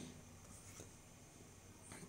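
Near silence: room tone with the faint scratch of a stylus drawing a pen stroke on a writing surface.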